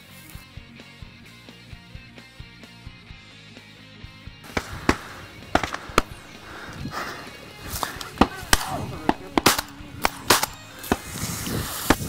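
Background music with a light ticking beat. From about four and a half seconds in, a string of shotgun shots fires at irregular intervals as pheasants flush; some are close and loud, others fainter.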